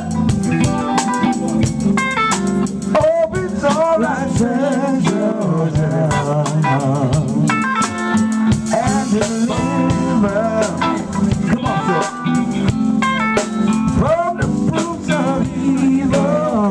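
A live band playing on an outdoor stage: electric guitar leading over a drum kit and keyboard, with a steady bass line and frequent drum hits.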